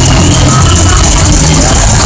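Death metal band playing live at full volume, with guitars, bass and drums packed into a dense, constant wall of sound. Recorded through a phone's microphone at a level near its maximum the whole time.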